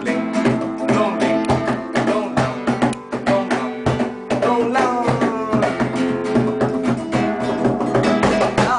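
Flamenco-style acoustic guitar strummed in a fast, steady rhythm, accompanied by a cajón slapped by hand.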